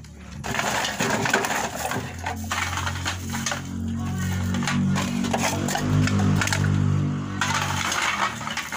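Scrap plastic bottles and cans clattering and crinkling as they are handled and sorted by hand, with many sharp clicks and clinks. From about two seconds in until shortly before the end a low hum with changing notes runs underneath.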